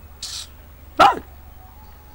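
A dog barks once, sharply, about a second in, falling in pitch; a brief hiss comes just before it.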